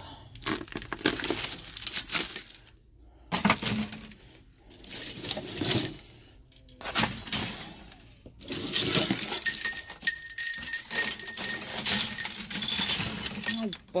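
Clattering and clinking as snow-covered metal garden ornaments and bags of compost are handled and moved, in several separate bursts. Over the last few seconds the clatter gets busier and a steady metallic ringing carries on underneath it.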